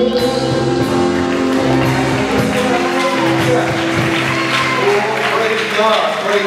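Live church band holding out the closing chords of a praise song on electric guitar and keyboard, with a voice over it and hand clapping near the end.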